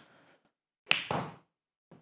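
A golf shot off a hitting mat: one sharp whack about a second in as the club strikes the ball, fading within half a second.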